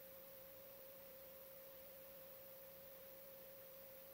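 Near silence with a faint, steady single-pitched tone that holds unchanged throughout.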